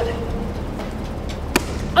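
A single basketball bounce on a hardwood gym floor about one and a half seconds in, over a low steady hum.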